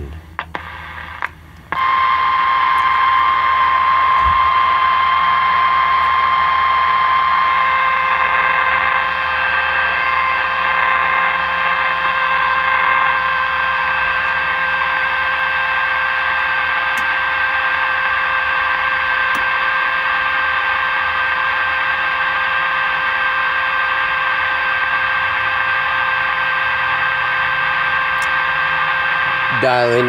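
Zenith 7S529 radio's loudspeaker coming on about two seconds in with a loud steady hiss and a steady whistle from the signal generator's test signal at 1500 on the broadcast band, heard during alignment. The pitch of the whistle changes about eight seconds in as the set is adjusted.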